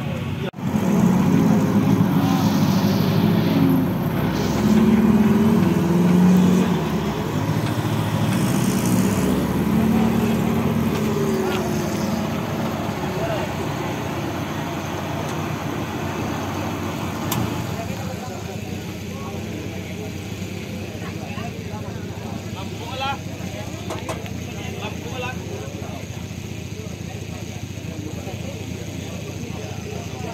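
Off-road competition vehicle's engine running, loudest in the first dozen seconds and then fading, with people's voices in the background.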